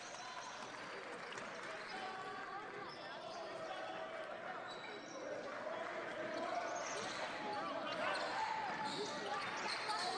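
A basketball dribbling on a hardwood court over the murmur of a small arena crowd, which grows a little louder in the second half.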